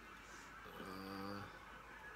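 A brief, low, steady hum from a voice, held for just under a second in the middle.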